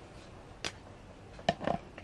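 Quiet handling noises on a tabletop: a sharp click about two-thirds of a second in, then another click about a second later followed by a brief low sound.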